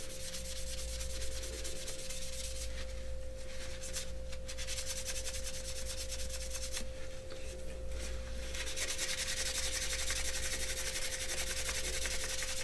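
Wadded paper towel buffing graphite powder into the primed surface of a 3D-printed plastic part under firm pressure: a continuous scratchy rubbing that thins briefly between strokes. A thin steady tone hums underneath.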